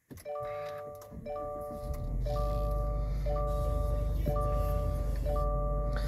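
2022 Subaru Ascent's 2.4-litre turbocharged flat-four starting from cold, heard from inside the cabin: it cranks briefly, catches about two seconds in and settles into a steady fast idle. Over it a multi-note warning chime repeats about once a second, six times: the seatbelt reminder for the unbelted driver.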